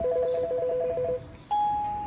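Apartment-building door intercom panel (Fermax) giving a fast two-pitch warbling call tone for about a second, then a single steady beep about 1.5 s in as the door lock is released.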